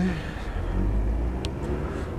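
Low, steady rumble of road traffic on an open street, with one short faint tick about a second and a half in.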